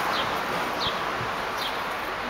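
A small bird repeats a short, high, falling chirp about once every three-quarters of a second over steady outdoor noise. Leaves brush close by.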